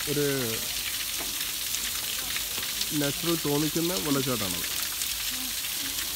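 Water splashing steadily down a small artificial rock-cascade waterfall, a continuous hiss.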